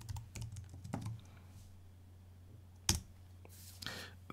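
Typing on a computer keyboard: a quick run of soft keystrokes in the first second, then one sharper, louder click about three seconds in.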